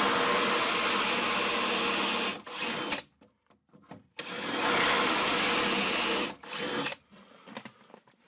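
Electric drill boring into wood through a 3D-printed drill-guide jig for dowel holes, with a steady motor whine. It runs twice, about two seconds each, with a short blip of the trigger after each run and a quiet gap of about a second between them.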